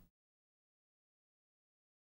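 Digital silence: a dead gap in the audio.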